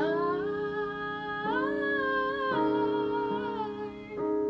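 A woman singing long held notes without clear words over sustained chords on a Yamaha digital keyboard. The voice slides up at the start, steps higher about a second and a half in, and drops back a second later.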